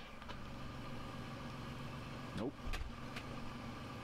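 A steady low mechanical hum with an engine-like drone, and a brief low thump a little past halfway.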